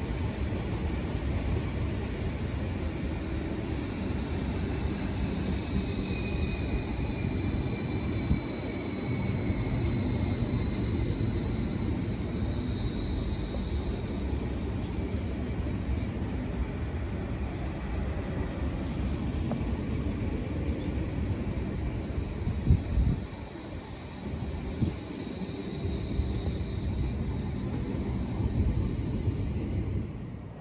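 A Transport for Wales diesel multiple unit running through the station: a steady rumble of engines and wheels on the track, with a high thin whine that swells in the middle and again near the end. The noise dips briefly a little after the middle.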